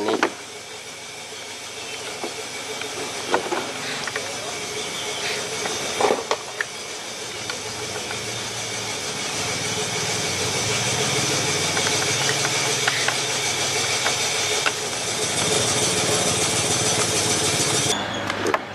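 A steady hiss that grows slowly louder, with a few light clicks and knocks from the plastic housing of a small chainsaw as it is handled and reassembled.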